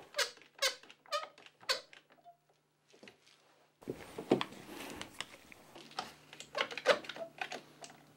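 One-handed trigger bar clamps being tightened onto a workbench edge: a quick run of short, squeaky ratchet clicks as the trigger handles are squeezed, a pause of about two seconds, then more clicks with some handling noise.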